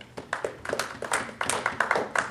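A small group of people clapping, with scattered, uneven claps that make only a weak round of applause.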